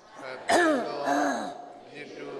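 A man clearing his throat in two short, loud vocal sounds, the first starting sharply about half a second in with a falling pitch, the second a little after.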